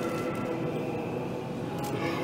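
Faint sustained Orthodox choral chant under the general noise of a packed church, with a short sharp click near the end.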